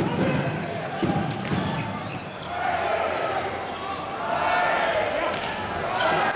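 A volleyball struck several times during a rally, with sharp slaps of hands on the ball, over the steady noise of a large crowd's voices in a sports hall. The crowd swells about four seconds in.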